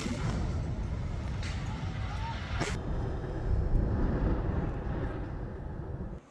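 Heavy, low rumbling outdoor noise with two sharp cracks about a second apart, the field sound of war footage of a city under airstrikes.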